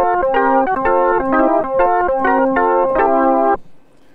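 Roland Boutique JU-06 synthesizer playing an organ-like preset as a quick run of chords and grace notes, stopping abruptly about three and a half seconds in. Playing past its four-voice limit makes the notes click in and out.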